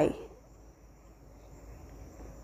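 Faint, steady, high-pitched chirring of insects, like crickets, in the background during a pause, just after a woman's voice finishes a word.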